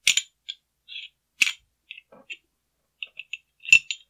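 Clicks and light metallic clinks of a Beretta PX4 Storm's slide, barrel and locking block being handled and worked apart. There are three sharper clicks: just after the start, about a second and a half in, and near the end, with smaller ticks between them.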